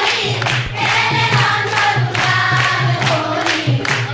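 Group of women singing a Holi song in chorus, clapping their hands in time at about two to three claps a second.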